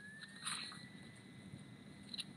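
Faint room noise over a call microphone, with one brief soft click about half a second in and a thin, steady high tone underneath.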